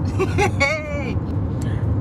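Steady low rumble of a car's road and engine noise heard from inside the moving cabin, with a woman's voice over it for about the first second.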